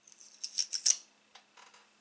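A jar of loose setting powder being unpacked and opened by hand: a quick run of short, scratchy rustles in the first second, then a few faint ones.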